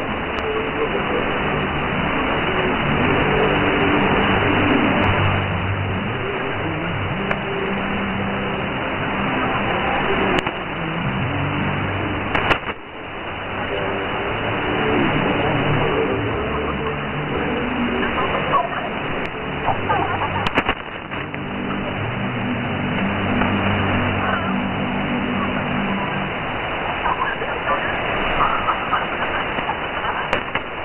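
Shortwave radio reception on 4055 kHz through a Winradio WR-G31DDC receiver in lower-sideband mode: steady static hiss with a distorted, hard-to-follow voice transmission coming and going in the noise. Sharp static clicks about twelve and twenty seconds in.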